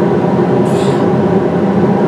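Recording of two industrial fans played as white noise: a loud, steady rushing drone. About three-quarters of a second in comes a short, sharp exhale.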